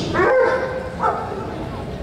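A dog giving two short high-pitched yelps, the first rising just after the start and the second falling about a second later.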